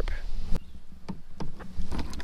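A few short light knocks and clicks, about four in two seconds, from fishing gear being handled against a plastic kayak, over a low steady rumble.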